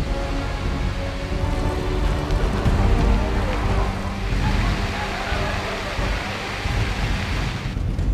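Hangar-bay fire-suppression sprinklers pouring water onto a steel deck, a steady rain-like hiss that swells in the middle, under background music with held tones.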